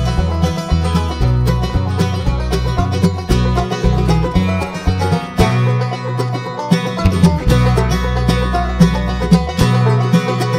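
Live bluegrass instrumental break with no singing: five-string banjo, mandolin and two acoustic guitars playing together at a steady, driving tempo.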